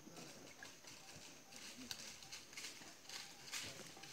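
Faint, irregular crunching and rustling of dry leaf litter under a tiger's footsteps as it walks.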